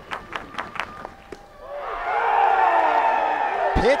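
A few sharp claps, then a ballpark crowd cheering, swelling loud from about two seconds in after a full-count pitch ends the at-bat.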